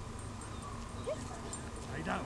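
A sheepdog gives a short rising whine about a second in, over a steady background hum.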